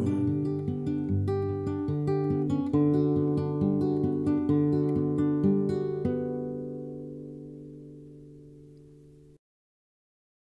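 Nylon-string classical guitar fingerpicked in the outro of a song: a run of plucked notes, then a final chord left to ring and fade for about three seconds. The sound cuts off suddenly shortly before the end.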